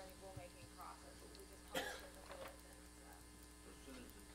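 Quiet meeting-room tone: a steady electrical hum with faint murmured voices, broken by one short, sharp sound about two seconds in.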